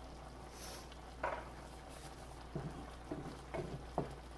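Wooden spatula stirring and scraping in a skillet of hot broth, with a few short knocks against the pan. There is a brief hiss about half a second in and a faint steady hum underneath.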